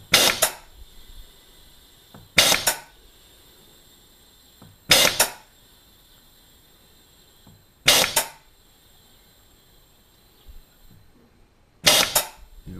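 MPS Technology C2 air-driven gas booster cycling, giving a short, loud burst of air at each piston stroke, about every two and a half to four seconds. The strokes come further apart as the high-pressure side climbs towards 220 bar while it fills a cylinder.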